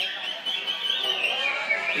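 Many caged songbirds singing at a bird-singing contest, an unbroken high, wavering chorus of whistled song.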